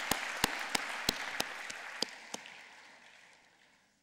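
Audience applauding, with a few sharp single claps standing out about three times a second. The applause dies away over the last two seconds.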